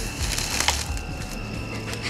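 Footsteps crunching and crackling through dry grass and dead stalks, the cracking mostly in the first second, with a steady high insect trill behind.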